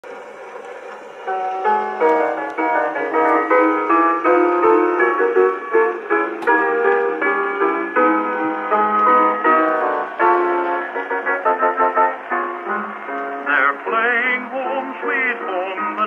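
An Edison Diamond Disc phonograph playing a record: a second or so of faint surface noise, then a piano introduction, with a tenor voice singing with vibrato coming in near the end.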